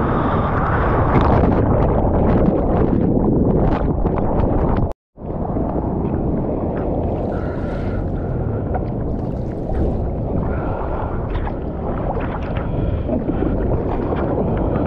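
Seawater sloshing and splashing around a surfboard as the surfer paddles with his hands, over a steady low rumble of wind and water on the board-mounted camera's microphone. The sound cuts out completely for a moment about five seconds in.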